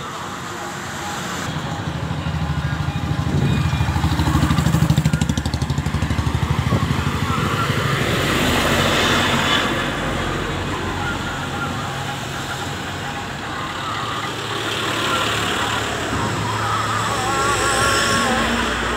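Motor vehicles driving past close by on a road: engine noise swells as one passes, loudest about five seconds in with a quick even pulsing, then another passes a few seconds later and a third approaches near the end.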